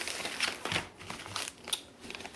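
A clear plastic bag and the foil hop packets inside it crinkling as they are handled and pulled out, in short rustles that are loudest in the first second, with one sharper rustle near the end.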